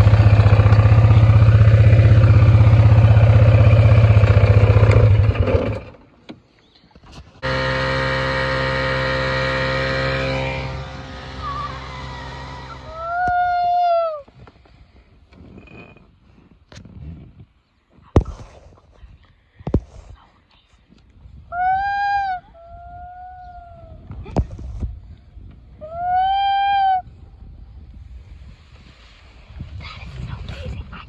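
A quad's engine running loud and steady for about six seconds. After a break, a small gas outboard motor runs steadily for about three seconds. Later come three short high calls, each rising and falling in pitch, with a few knocks between them.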